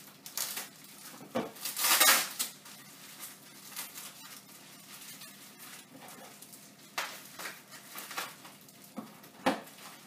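Clear plastic packaging crinkling and rustling as it is handled, in a string of short crackly bursts, the longest and loudest about two seconds in.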